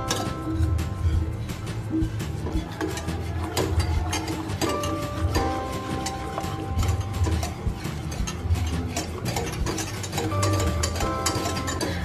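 A wire whisk clicking and scraping rapidly against a metal saucepan as it stirs a milk, butter and flour sauce, over light background music.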